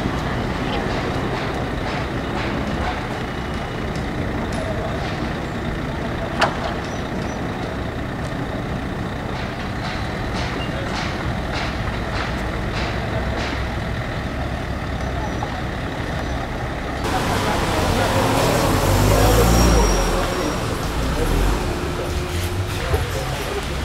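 Steady outdoor noise with a few faint clicks, then, after an abrupt cut about seventeen seconds in, louder street noise in which a motor vehicle's engine swells and fades a couple of seconds later.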